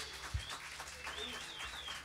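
The band's sound has just died away, leaving a quiet room: a single low thump about a third of a second in, then a faint, high, wavering whistle-like tone near the end.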